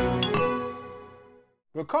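Intro theme music ending on a last bright, ringing note that fades away over about a second and a half, followed by a moment of silence. A man's voice starts speaking near the end.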